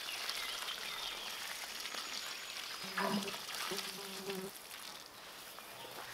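Water pouring from a metal watering can onto soil, a steady hiss that fades out about five seconds in. A fly buzzes briefly around the middle.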